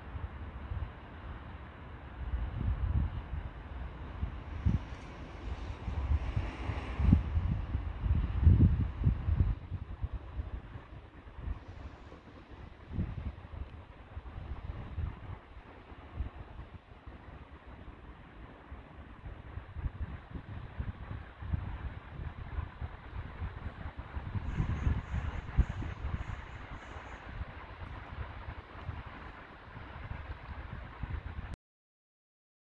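Wind buffeting the microphone outdoors: an uneven low rumble that swells in gusts, strongest a few seconds in and again near the end. A short run of faint high peeps sits on top of it near the end.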